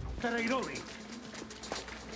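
Speech: a voice says one word, then there is a short pause with faint background sound and a small click.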